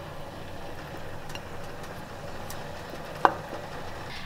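Potato and onion chunks being placed by hand into a pot of curry: a few faint taps and one sharper knock about three seconds in, over a steady low hum.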